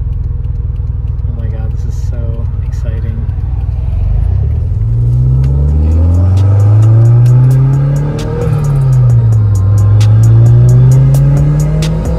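Gen 4 3S-GTE turbocharged four-cylinder in a 1991 Toyota MR2, heard from inside the cabin through an aftermarket cat-back exhaust, running low and steady at first and then accelerating. Its pitch climbs, drops at an upshift about eight seconds in, and climbs again.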